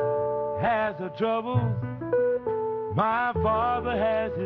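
Instrumental break in a slow blues recording: a lead line of bent, sliding notes comes in short phrases about every second or so, over held chords and a steady bass.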